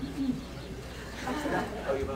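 Low, indistinct voices murmuring, in two short stretches.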